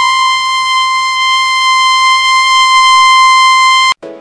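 A loud, steady electronic beep tone: one buzzy pitch rich in overtones, held unchanged for about four seconds and then cut off abruptly near the end.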